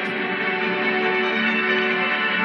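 Music with sustained, ringing bell-like tones over a steady held chord.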